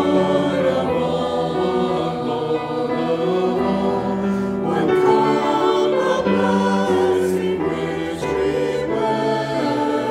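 A mixed church choir singing a slow communion hymn, with piano accompaniment.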